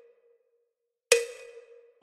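A single sharp metronome click about a second in, with a short ringing tail that fades out. It comes after a moment of near silence.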